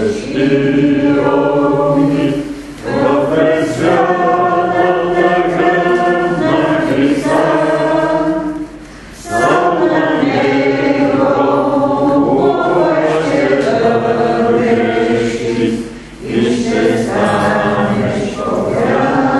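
A congregation singing a hymn together in long, held phrases, with short pauses for breath about 3, 9 and 16 seconds in.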